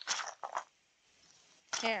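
Two short rustles of a hand scooping trail mix (cashews and dried fruit) from a bowl into a plastic sandwich bag, with a woman's voice starting near the end.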